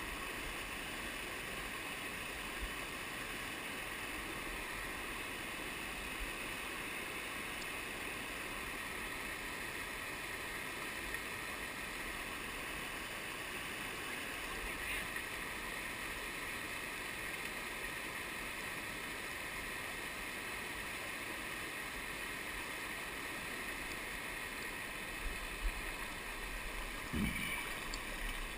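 Shallow river rapids running over a bedrock slide: a steady, even rush of water. A few light knocks come near the end.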